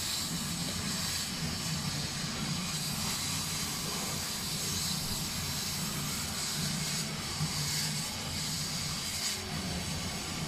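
LM-9060 100 W CO2 laser cutting machine running as it cuts 1 mm leather: a steady hiss, with a low hum beneath it.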